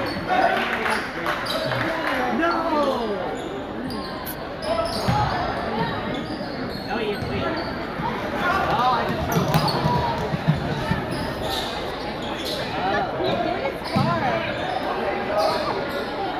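Crowd chatter and calls from spectators filling a gymnasium, with a basketball bouncing on the hardwood court now and then.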